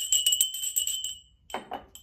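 A small hand bell shaken quickly, its clapper striking many times a second over one steady ringing note, which stops about a second and a half in. A woman's voice starts speaking near the end.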